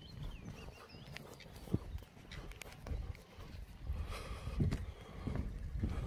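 Faint footsteps of someone walking across wet grass, with a low rumble on the microphone throughout.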